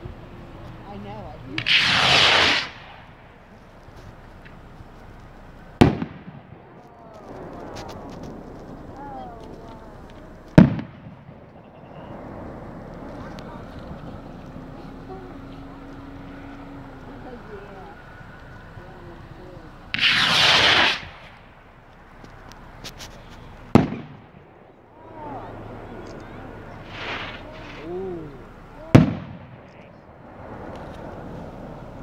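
Two homemade skyrockets launching, each with a rushing whoosh lasting about a second, one near the start and one about two-thirds of the way through. Four sharp bangs of rocket heads bursting overhead follow, the loudest about ten seconds in and just before the end.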